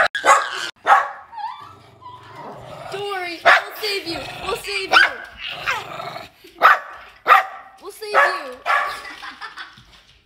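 Small dog barking repeatedly, in short sharp barks.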